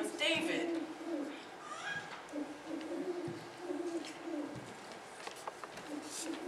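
Low cooing calls, bird-like: a run of steady low notes, each under a second, with short pauses and a longer break about two-thirds of the way through.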